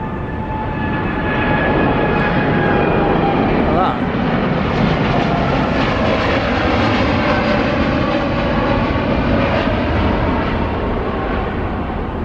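Air Canada Boeing 787 Dreamliner climbing out overhead just after takeoff. Its jet engines make a loud, steady roar, with a faint whine that slowly falls in pitch as it passes.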